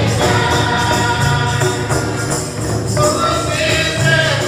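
A choir, mostly women's voices, singing a Christian gospel song in unison, with hand-drum accompaniment.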